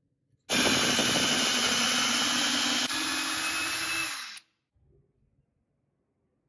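Cordless drill with a twist bit boring a hole through a wooden board: the motor runs steadily for about four seconds, its pitch stepping up slightly partway through, then winds down and stops.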